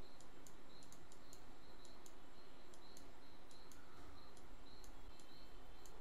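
Faint room tone from an open microphone, with light, evenly spaced ticks about three a second throughout.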